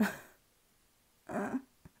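A woman's short breathy exhale, then about a second and a half in a brief voiced, laugh-like sound, followed by a small click.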